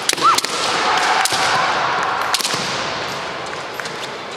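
Kendo bamboo shinai clacking and striking: sharp cracks near the start, another about a second in, and a quick double crack about two and a half seconds in.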